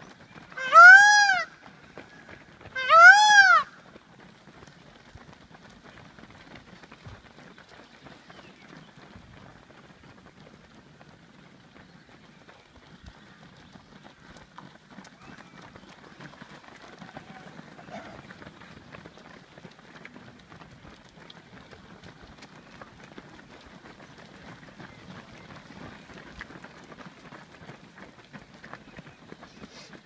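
Indian peafowl (peacock) calling twice in the first few seconds: loud wails that each rise and then fall in pitch. After that, a low patter of runners' feet on a gravel path.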